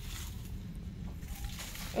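Faint rustle of lemon-tree leaves and twigs brushing against the camera, over a steady low rumble; the rustle fades after the first half second.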